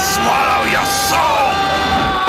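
Horror film soundtrack: yelling, wailing voices that slide up and down in pitch over a high, held musical chord.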